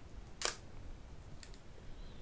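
Quiet room tone with one short, sharp click about half a second in.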